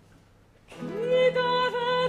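Baroque opera: after a brief lull, a singer's voice enters under a second in, gliding up onto a held note with vibrato over a steady low note from the continuo strings.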